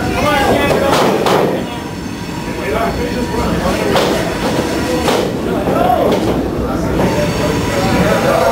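Steady crowd and room noise at a wrestling ring, broken by about four sharp smacks from the wrestlers' action, two close together about a second in and two more around four and five seconds in. Voices shout now and then.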